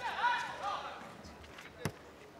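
Faint voices in the hall fading out over the first second, then a single sharp thump near the end as the raid plays out on the mat.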